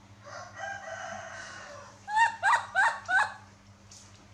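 A rooster crowing: one long drawn-out call, then four short, loud calls in quick succession.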